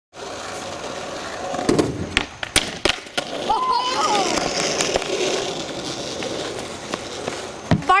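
Skateboard wheels rolling on asphalt, with a quick run of sharp clacks and knocks from about two to three seconds in as the board hits the ramp and rail on a backlip attempt. The wheels then roll on steadily.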